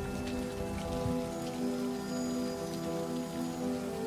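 Steady rain falling, under a low, sustained synthesizer chord held through.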